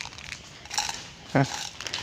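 Footsteps on a concrete floor with faint handling noises, and a brief vocal sound about a second and a half in.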